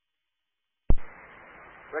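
Dead silence, then about a second in a sharp click as an air-band radio transmission keys up, followed by the steady hiss of the open channel.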